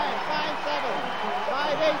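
Voices speaking over a steady background of arena crowd noise.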